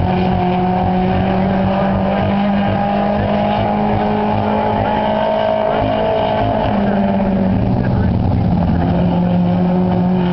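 A dirt-track race car's engine running hard as the car laps the oval alone, a steady engine note that shifts briefly about seven seconds in and then carries on.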